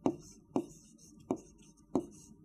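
A stylus knocking against the glass of an interactive touch-screen board as letters are handwritten: four sharp taps at uneven intervals.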